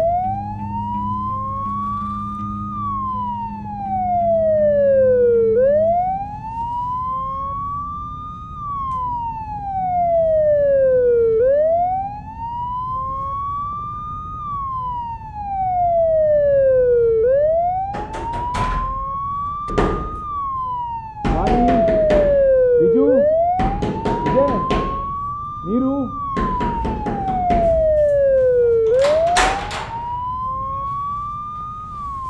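A wailing siren rising and falling slowly, about one full cycle every six seconds. From a little past halfway, a series of loud bangs on a door joins it.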